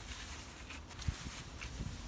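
Dry rice hulls rustling and pattering as gloved hands scatter handfuls of them onto potting soil as mulch, with a few soft knocks.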